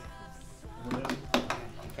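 Thin aluminium welding sleeve being handled, giving a faint metallic ring and then a few sharp knocks a second or so in.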